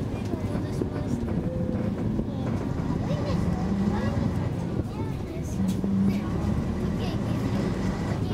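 Steady low rumble of a city bus's engine and running gear, heard from inside the passenger cabin, with faint voices over it.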